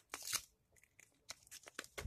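Faint rustle of paper cut-outs being handled: a short papery swish just after the start, then a few light crinkles and taps.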